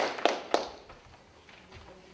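The last few hand claps of applause, three sharp claps in the first half-second, dying away to a quiet room.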